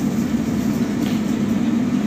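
Steady low rumbling noise, even in level throughout, with no clear separate events.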